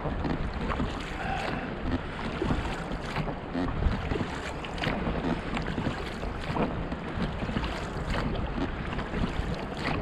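Seawater slapping and splashing against the hull of an inflatable rowing dinghy in a light swell, with irregular short splashes from the oars. Wind buffets the microphone underneath.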